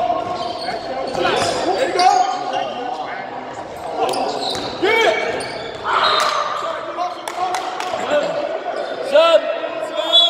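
Basketball game play on a hardwood gym floor: the ball bouncing, repeated sharp impacts, several short sneaker squeaks, and players' voices calling out, all echoing in a large hall.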